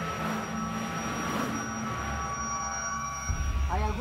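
A steady droning wash with low rumble and faint held tones, typical of a documentary soundtrack bed. A voice begins just before the end.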